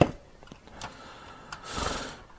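Hands handling the plastic chassis of a 1:8 scale DeLorean model kit: a sharp click at the start, a few light taps, then a short rubbing scrape near the end as the rear wheel-arch section is gripped.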